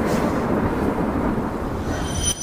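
Instrumental passage of a sped-up nightcore pop track with no vocals or melody: a dense, low, noise-like wash whose high end dims over the two seconds.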